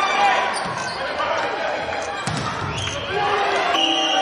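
Indoor volleyball play with the ball being struck, sneakers squeaking on the court, and players calling out, echoing in a large hall.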